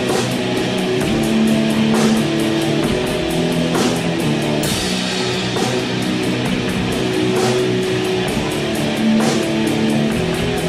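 Heavy, sludgy stoner-rock music: distorted electric guitar chords held over a drum kit, with quick steady cymbal strikes and a few harder crashes.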